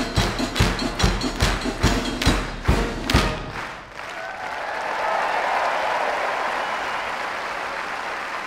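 A live band piece with loud, evenly spaced percussive strikes keeping the beat, ending about three seconds in. After a short pause, audience applause rises and holds steady.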